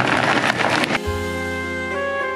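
Ninja countertop blender running on low, a loud steady whir that cuts off suddenly about a second in. Background music with sustained held notes replaces it.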